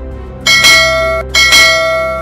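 Two bright bell chimes about a second apart, each a quick double strike that rings on, over steady background music: a notification-bell sound effect.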